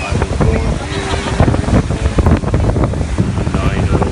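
Breaking surf washing up a sandy beach, with heavy wind buffeting on the microphone and a few voices of people in the water.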